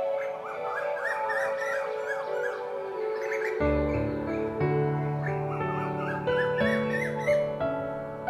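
Background music of held tones with birds chirping over it in short runs; low bass notes join about halfway through.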